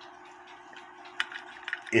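Faint handling clicks from a small clock's parts being held and moved, with one sharper click a little past the middle, over a faint steady hum.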